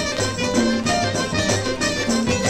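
Armenian folk dance music from a late-1950s LP: a melody line carried over a bass line and a steady, evenly paced drum beat.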